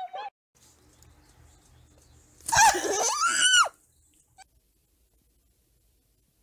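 A person's loud, high-pitched scream lasting about a second, its pitch rising and falling, heard about two and a half seconds in after a quiet stretch.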